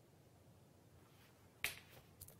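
Near-silent room tone broken by a single sharp click near the end.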